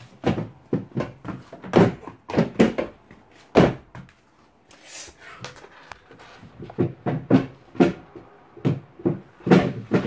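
Irregular knocks, bumps and clatter of things being handled close to the microphone in a small room, with a louder knock about three and a half seconds in and a quick run of knocks near the end.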